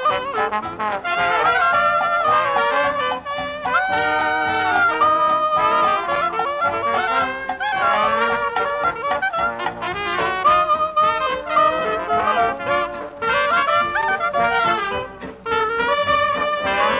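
Traditional New Orleans jazz band playing a parade tune, trumpet and trombone leading with clarinet woven through in collective ensemble playing.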